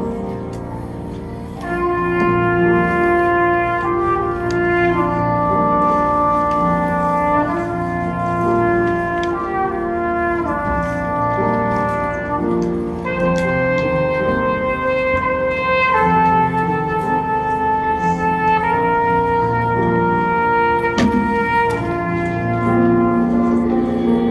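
School band of wind and brass instruments with piano playing a slow piece in held chords, the notes changing every second or two. The music swells louder about two seconds in.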